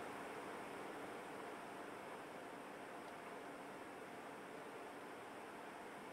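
Faint, steady background hiss of room tone, with no distinct sound event.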